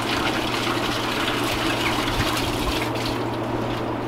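Water running steadily through an open drain, over a steady low mechanical hum.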